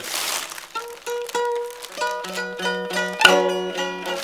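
Eight-string mandolin being played: after a brief rustle of plastic, a few single plucked notes ring out, then quicker picked notes and a louder strum about three seconds in.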